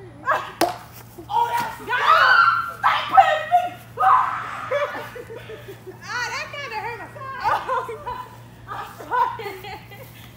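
A single sharp smack about half a second in as the pitched water balloon meets the plastic toy bat, followed by girls shrieking and laughing excitedly.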